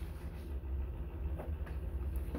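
Sheets of paper being handled, giving a few faint rustles over a steady low hum.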